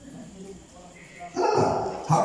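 A dog barking faintly, then a man's voice through a microphone and loudspeaker, starting about one and a half seconds in.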